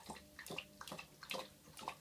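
Dog lapping water from a plastic bowl: a steady rhythm of wet laps, about two a second.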